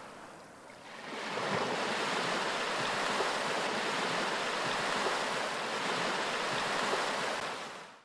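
Ocean surf: a steady rush of breaking waves, starting soft, swelling up about a second in, and fading out at the very end.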